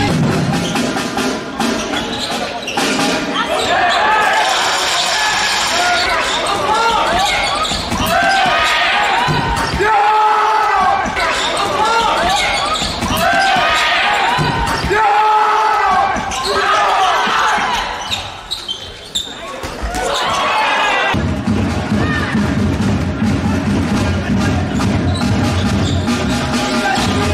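Indoor handball game sound: a handball bouncing on the hall floor amid players' shouts and calls. Background music comes back in about 21 seconds in.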